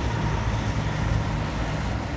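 Road traffic with a heavy lorry's engine running: a steady low rumble.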